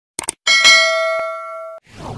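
Two quick clicks, then a bright bell ding that rings on for over a second and cuts off short: the click-and-notification-bell sound effect of a subscribe-button animation.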